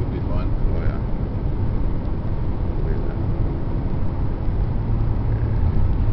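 Steady low rumble of tyre and engine noise heard inside the cabin of a 2002 Chevrolet Impala cruising at road speed.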